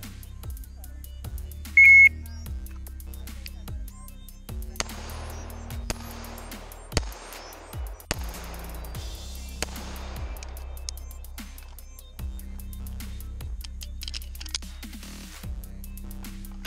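A shot timer gives its start signal: one short, high beep about two seconds in. Background music with a steady beat runs under it and carries on afterwards.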